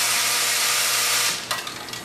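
Royal Master TG-12x4 centerless grinder running its automatic part-loading and grinding cycle: a loud steady hiss over a low machine hum, which cuts off abruptly about one and a half seconds in and is followed by a click.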